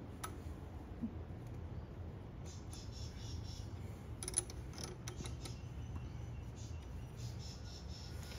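Faint metallic clicks of a small spanner tightening a lock nut on an outboard motor's timing linkage, a few scattered ticks with the clearest about four seconds in, over a low steady hum.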